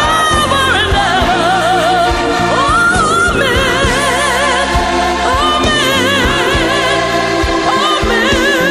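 Gospel music: singing with a strong vibrato over sustained bass chords that change every second or so.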